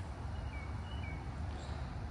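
A bird's few short, faint chirps, in two pairs about half a second apart, over a low steady outdoor rumble.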